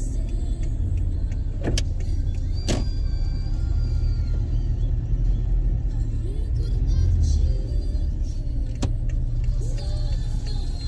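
Steady low rumble of a car's engine and tyres heard from inside the cabin while driving slowly, with a few sharp clicks: two about two and three seconds in, and one near the end.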